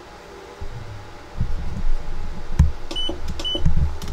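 Two short electronic beeps from the ultrasonic cleaning bath's control panel as its timer buttons are pressed, about three seconds in and half a second apart. Low knocks and bumps of hands on the unit and its stand come before and between them.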